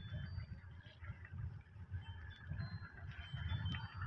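Wind buffeting the microphone, an uneven low rumble that rises and falls, with a few faint, short high-pitched chirps over it.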